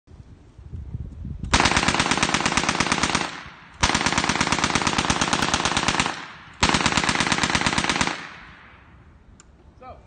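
Propane-and-oxygen gunfire simulator built as a replica Swiss MG 11 machine gun, firing three sustained automatic bursts of about two seconds each with short pauses between. Each rapid report is a gas detonation, with no moving parts or projectiles.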